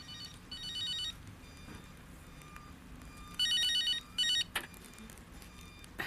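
A telephone ringing with a warbling electronic trill, in two double rings about three and a half seconds apart. A single click follows shortly after the second ring.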